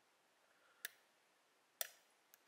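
Two sharp, short metallic clicks about a second apart, the second louder: a hook pick lifting the fifth pin of a brass Abus rim cylinder under light tension. The pin sets at the shear line and the cylinder opens.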